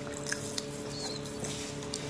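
Faint wet chewing and mouth sounds, with a few soft clicks, over a steady background hum.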